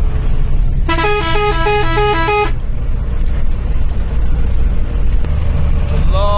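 A vehicle's musical horn sounds a rapid two-note warble for about a second and a half, starting about a second in. It plays over the steady low rumble of the moving vehicle.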